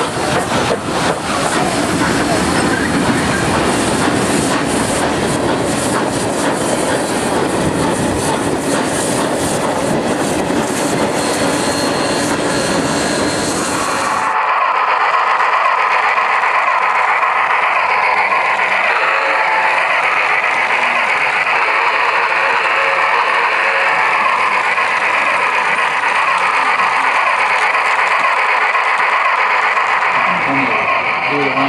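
Train passing, its wheels clicking over rail joints with a heavy rumble. About halfway through it cuts abruptly to a different, steadier train sound that is thinner, with little bass.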